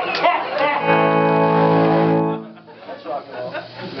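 Electric guitar through an amplifier: one chord is struck about a second in, rings steadily for just over a second, then is cut off suddenly, as if muted.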